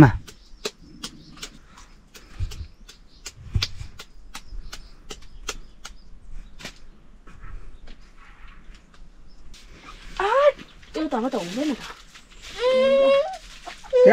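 A run of faint, sharp clicks, roughly two or three a second, through the first half. From about ten seconds in come three louder stretches of drawn-out, pitch-sliding vocal sound.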